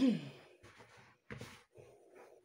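A person's sigh, its pitch falling over about half a second, then faint rubbing and pressing of hands kneading soft dough in a glass bowl.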